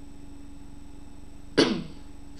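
A boy's single short cough about one and a half seconds in, over a faint steady electrical hum.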